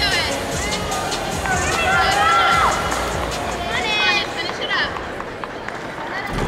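Arena background music with voices calling or singing over it, and a steady murmur of the crowd.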